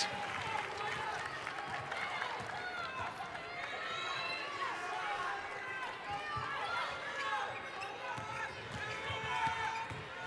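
Basketball arena sound during live play: a basketball being dribbled on the hardwood court, sneakers squeaking, and crowd and player voices calling out in the background.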